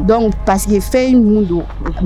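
Speech only: a woman talking in a steady conversational voice.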